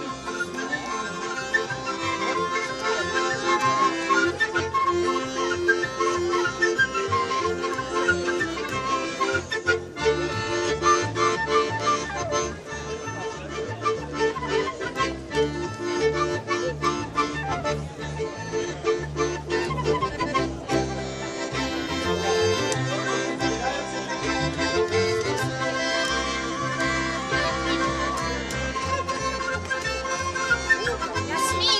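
Street band of accordion, violin, double bass and a small wind instrument playing a tune, with the accordion most prominent over a moving double-bass line.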